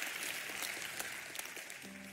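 Congregation applauding, the clapping fading away steadily.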